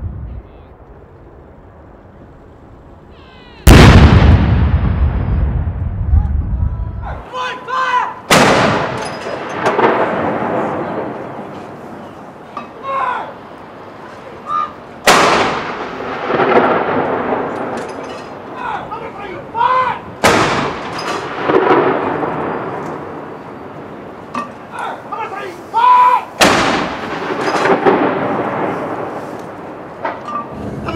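Ceremonial artillery firing a gun salute: five blank rounds about five to six seconds apart, each a sudden boom that rolls away in a long echo. The first shot, about four seconds in, is the loudest.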